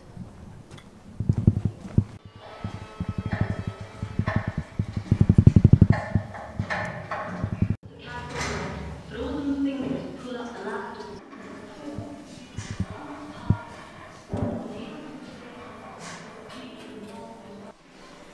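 Indistinct people's voices, with a clattering, irregular texture in the first half that changes abruptly about eight seconds in.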